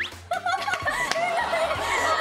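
A group of women laughing and giggling.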